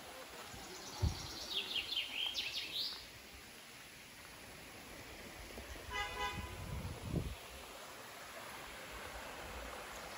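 A small bird singing a quick run of high chirps in the first few seconds, then a short horn-like toot about six seconds in.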